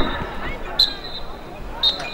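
Referee's whistle blown in two short, shrill blasts, about a second apart, signalling half-time, over faint crowd chatter.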